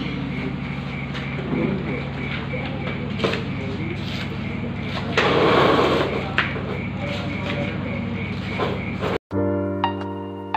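Busy cooking area: a steady low hum under scattered clinks and knocks of pots and utensils, with a louder burst of hissing about five seconds in. Near the end the sound cuts out suddenly and music begins.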